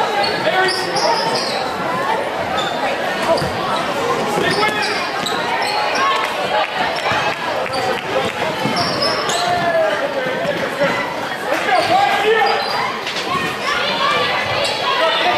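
A basketball bouncing on a hardwood gym floor during live play, under a constant mix of spectators' and players' voices in a school gym.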